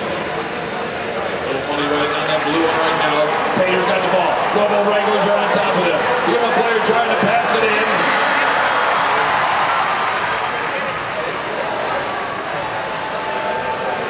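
A man's voice over a public-address system in a large, echoing hall, over steady crowd noise that swells from about six to ten seconds in.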